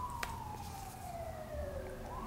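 A faint siren wail sliding slowly down in pitch, then starting to rise again near the end. A short click from the phone case being handled comes just after the start.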